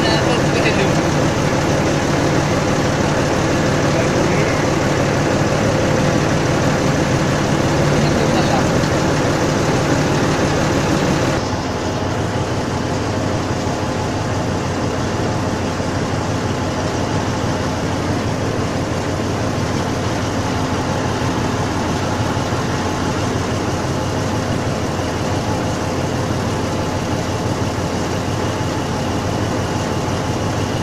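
Mobile crane truck's engine running steadily while the crane holds a tower section on its hook. The sound drops a step in level about eleven seconds in and stays steady after.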